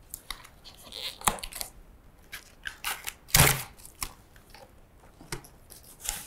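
A cardboard monitor box being pulled open and handled by hand: a series of short tearing and scraping sounds of cardboard, the loudest about three and a half seconds in.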